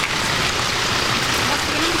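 Steady hiss of rain with a Volvo saloon rolling slowly past on wet pavement, its tyres swishing on the wet road.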